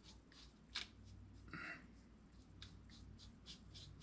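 Small paintbrush stroking water-based paint onto a TruForm armature: faint, irregular scratchy strokes, with one sharper tick about a second in.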